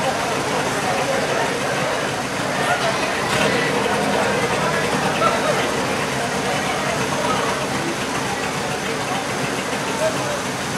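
Indistinct chatter of spectators close by, with a rally car's engine running in the background.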